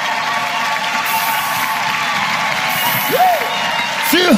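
Studio audience applauding, with one short call from a single voice about three seconds in.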